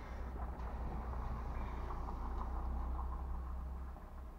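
A motor vehicle's engine rumbling low and steady, growing louder through the middle and easing off near the end.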